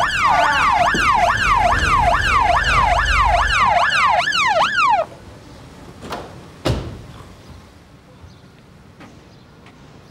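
Police car siren on a fast yelp, a rising-and-falling wail repeating about two and a half times a second, cutting off suddenly about five seconds in. A couple of sharp thumps follow a second or two later.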